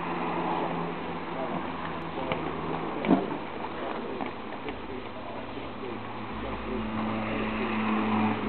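Pool water sloshing and splashing around an inflatable lilo as a man balances standing on it, with a brief sharp sound about three seconds in.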